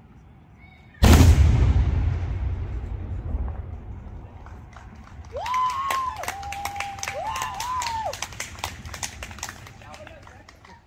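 One loud bang from a fireworks salute shell about a second in, its report rumbling and echoing away over several seconds. Scattered clapping follows from about halfway through, with one long whooping cheer that rises, holds and falls.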